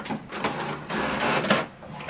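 HP OfficeJet Pro 8135e inkjet printer running a print job, feeding a page through. The mechanism gets louder about a second in.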